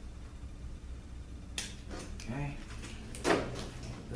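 Wiring harness connectors being unplugged from a 4T45E transmission's valve-body solenoids and the harness handled: a sharp click about one and a half seconds in and a louder clack a little past three seconds, over a steady low hum.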